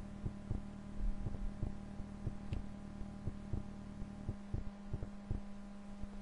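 Steady low electrical hum with faint, evenly spaced ticks about three times a second.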